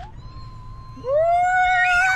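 A person's drawn-out, high-pitched vocal squeal, like a "wheee", that starts about halfway through, rises briefly and then holds steady while the man goes down a metal playground slide.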